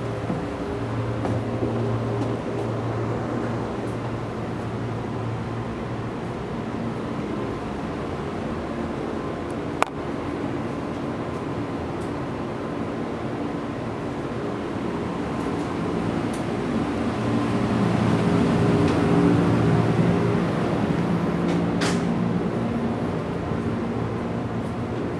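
Interior of a JR East 113-series electric train car: a steady mechanical hum with several level tones, growing somewhat louder past the middle. A single sharp click comes about ten seconds in.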